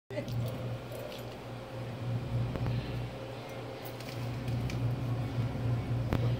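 A low, steady hum that swells and fades slightly, with a few light clicks.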